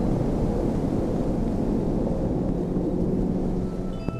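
A steady, fairly loud low rumble with a faint hum running under it. It cuts off suddenly at the end.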